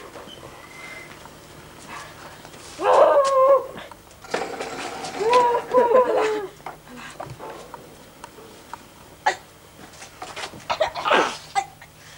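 A person's voice letting out two long wavering cries without words, one about three seconds in and a longer one about five seconds in, followed by a few short knocks and clicks near the end.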